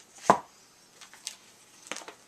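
A bagged comic book or small stack of comics set down with a single solid thump a quarter second in, followed by two light plastic crinkles or taps as the bagged comics are handled.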